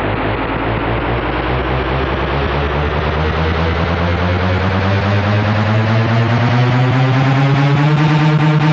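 Electronic dance music from a 1990s club DJ set in a build-up: a dense, rapid pulse under tones that rise steadily in pitch while the sound brightens and grows slowly louder.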